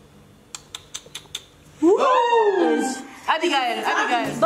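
A few light clicks of wooden Jenga blocks being touched and nudged on the tower, then a burst of women's excited shrieks and squeals, sliding up and down in pitch, in two runs with a short dip between them.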